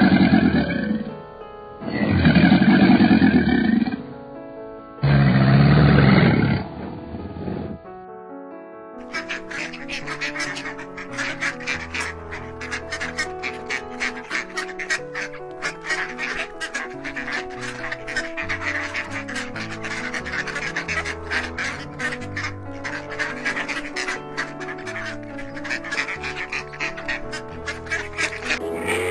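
Alligators bellowing: three loud, deep bellows of about two seconds each in the first seven seconds, over soft background music. From about nine seconds on there is only background music with a busy, quick percussive beat.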